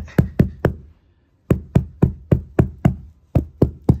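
An open hand beating a carpeted floor, about four sharp slaps a second, in two runs separated by a pause of about a second.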